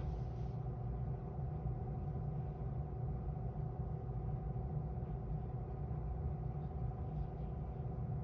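Steady low hum and rumble of a stopped electric train, heard inside the carriage, with a couple of faint steady tones over it.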